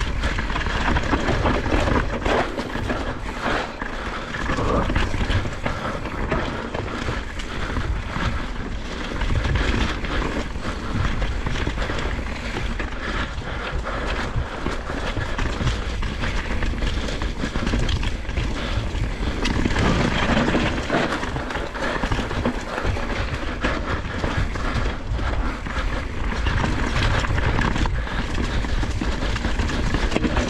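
Mountain bike riding fast down a dirt forest trail: tyres rolling over earth and leaf litter, with continual rattling and knocks from the bike over roots and bumps.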